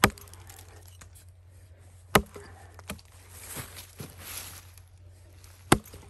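Axe chopping into a felled log: three sharp strikes, one right at the start, one about two seconds in and one near the end, with a couple of lighter knocks between them.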